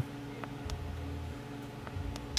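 Quiet cabin room tone: a faint steady low hum with a few soft clicks.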